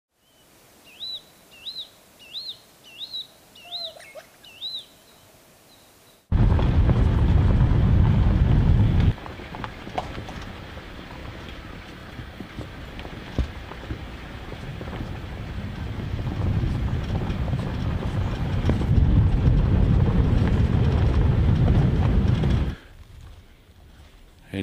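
A bird calling six times in a row, a rising-and-falling whistle about every two-thirds of a second. Then a vehicle driving on a dirt forest track, heard from inside: a loud low rumble of engine and tyres that drops back after a few seconds, builds again, and cuts off near the end.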